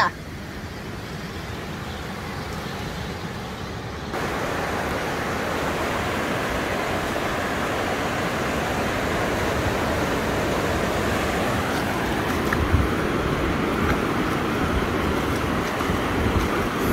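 Ocean surf washing up a sandy beach: a steady rushing that steps up in loudness about four seconds in and keeps slowly building.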